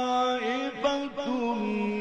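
A man's voice reciting the Quran in the melodic mujawwad style. He holds a long note, runs through a short ornamented turn about half a second in, and settles on a lower held note.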